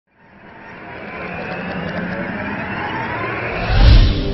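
Intro-logo sound effect: a noisy whoosh fades in and swells, then hits a deep boom near the end as the studio logo appears.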